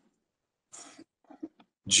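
Mostly silence, broken by a short breath-like noise from a man about a second in and a few faint mouth sounds after it, just before he starts to speak at the very end.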